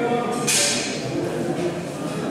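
Men's voices talking in the background of a large, echoing indoor hall, with a brief hiss about half a second in.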